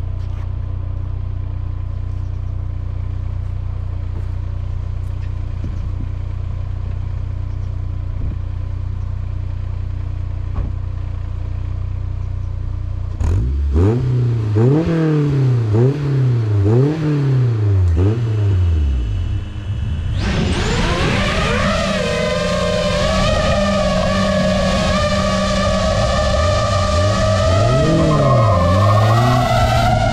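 Honda S2000's 2.0-litre four-cylinder engine idling steadily, then revved in about five quick blips starting around 13 seconds in. From about 20 seconds in, a high, wavering whine of FPV drone motors lifting off right at the microphone takes over, with the engine revving again beneath it near the end.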